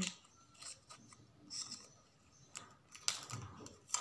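Faint clicks and scrapes of fingers picking at a small plastic spray bottle, with a louder plastic rustle about three seconds in.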